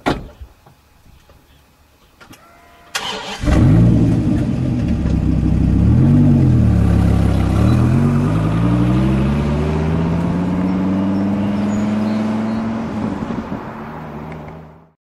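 Dodge Viper V10 starting with a sudden catch about three seconds in. The engine revs up and back down once, then pulls away, its pitch climbing steadily as it accelerates and fading toward the end. A single thump comes right at the start.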